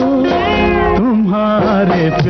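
A 1960s Hindi film song playing, with a melody line and an orchestral backing. About half a second in, a high note glides up and falls back.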